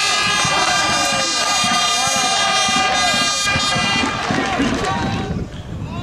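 A spectators' air horn sounding in one long, steady blast over shouting fans celebrating a goal, the horn dying away about five seconds in.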